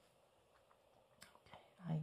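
Near silence, then a single small click a little over a second in and soft breathy mouth sounds running into a woman saying "Okay" at the end.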